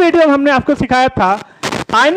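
A man talking in Hindi, lecturing, with a brief sharp burst of noise near the end before he carries on.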